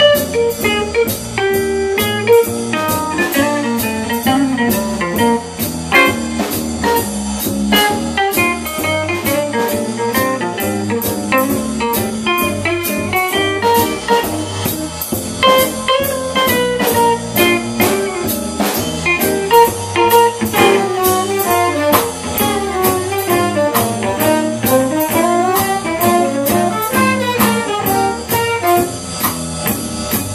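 Small jazz combo playing a swinging blues: tenor saxophone and guitars over a drum kit keeping a steady beat.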